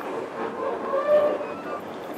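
Passenger train running, with steady rolling noise from the rails and carriage, heard from on board.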